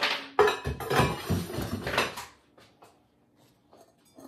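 Close, loud clattering and knocking with rustle for about two and a half seconds, like hard ware and objects being handled right by the microphone, then only a few faint clicks.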